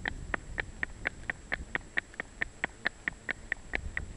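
Miniature horse trotting in harness: quick, even hoof clops, about five a second, over the low rumble of the cart's wheels on a rough road.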